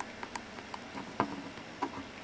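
A few quiet, small metal clicks and ticks as the loosened set screw and steel parts of a sewing-machine safety clutch hub are handled and turned out by hand.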